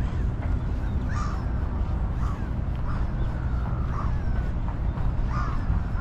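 Several bird calls at intervals, over a steady low rumble.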